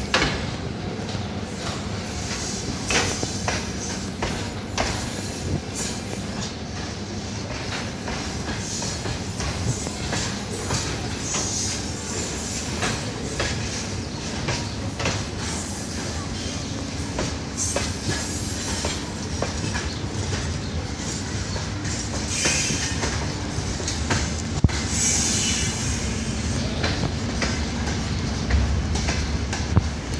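Freight train of hopper and gondola wagons rolling past, the wheels clacking steadily over the rail joints. High wheel squeals come in several times in the second half.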